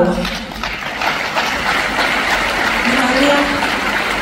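Audience applauding, a steady dense clapping, with a brief voice heard through it about three seconds in.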